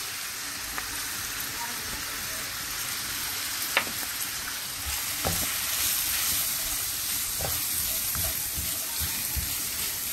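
Diced onion, bell pepper and garlic sizzling steadily in hot oil in a frying pan while flour is stirred in, with a spoon scraping and lightly knocking against the pan a few times.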